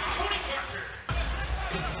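Basketball arena background during a game broadcast: crowd murmur and court noise with faint voices, fading down and then jumping back up abruptly about a second in at an edit between two plays.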